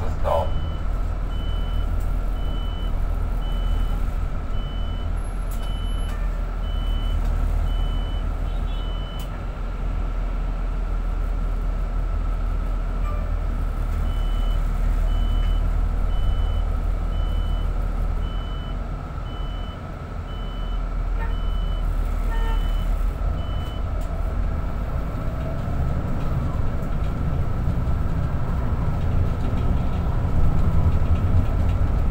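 Steady engine and road rumble inside the cabin of a moving bus, with a faint steady whine. A high electronic beep repeats about three times every two seconds for a stretch at the start, stops, then returns for about ten seconds in the middle.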